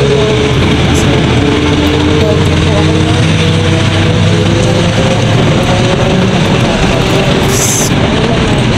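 Jeepney's diesel engine running while under way, with loud road and wind noise coming through the open side; the engine note climbs slowly through the middle.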